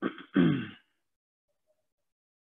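A man clearing his throat once, near the start, in one short voiced rasp that falls in pitch.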